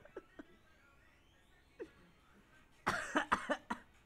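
A person coughing, a quick cluster of several coughs about three seconds in.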